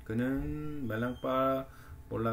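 Speech only: a man reading an Indonesian sentence aloud slowly, holding one syllable long.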